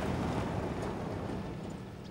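A loaded Land Rover pickup driving on a rough dirt track: its engine hum and road noise fade steadily as it moves away.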